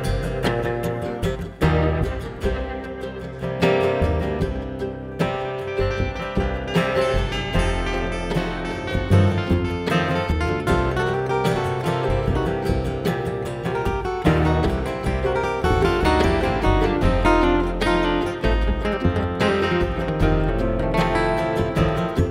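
Acoustic bluegrass band playing an instrumental break: a flatpicked acoustic guitar lead over upright bass and rhythm guitar, with no singing.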